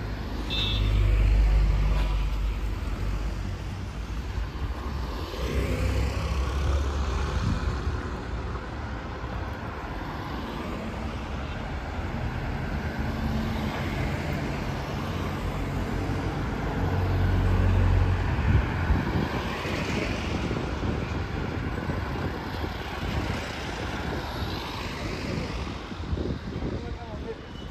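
Street traffic: cars and vans passing close by, their engines swelling and fading as each goes past, loudest just after the start and again about two-thirds of the way through.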